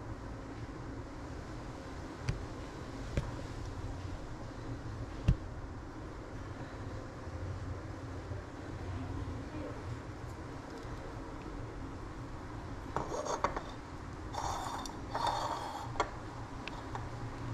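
Handling noise as a ceramic figurine is turned over by hand above a granite counter. A low steady rumble runs under a few sharp clicks, the loudest about five seconds in, and bouts of rubbing and scraping come near the end as the figurine is brought down to the counter.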